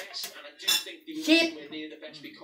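Steel knife and fork clinking and scraping against a ceramic plate while a roast chicken is carved.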